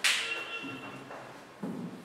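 A sharp slap-like sound at the start. About one and a half seconds in, a handheld eraser starts rubbing across a whiteboard.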